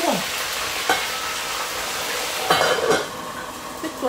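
Food sizzling in a hot pan, a steady hiss that drops away about three seconds in.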